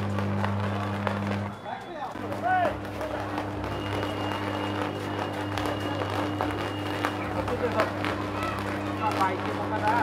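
Scattered voices of a crowd of onlookers over a steady low hum. The hum drops out briefly about a second and a half in, then returns.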